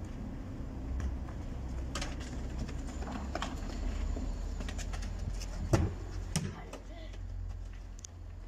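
A football being kicked around on bare ground: a few sharp thuds, the loudest about six seconds in, over a steady low rumble, with children's voices.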